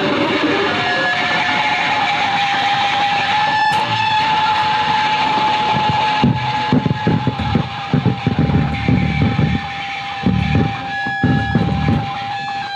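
Live experimental music played on tabletop instruments and electronics: one high tone held steady over a dense noisy wash, with irregular low rumbling pulses coming in about halfway through.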